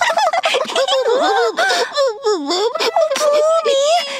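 A cartoon character's high-pitched wordless voice, chattering and giggling with pitch swooping up and down, including a deep dip a little past the middle.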